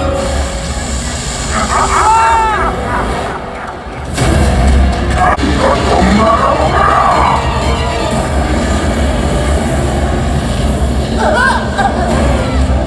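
Stage-show soundtrack over loudspeakers: dramatic music with a heavy low rumble and voices. The sound dips briefly a few seconds in, then swells back loud with a deep low boom.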